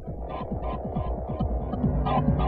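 Electronic soundtrack: a deep, steady hum under a rapid throbbing run of short, falling low blips, with fainter higher pulses keeping a quicker rhythm.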